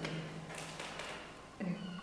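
A pause in a woman's speech with faint room tone, then about a second and a half in a short, steady low hum from her voice, a filled pause before she speaks again.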